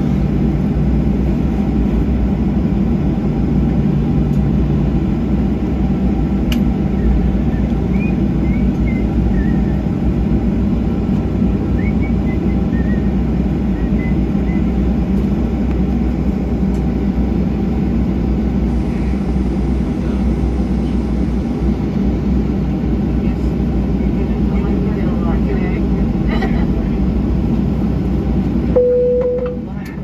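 Cabin noise of a Boeing 737-700 taxiing slowly at idle, heard from a window seat beside the engine: a steady low hum of the CFM56 turbofan and air. Near the end a single cabin chime sounds, and the noise suddenly drops.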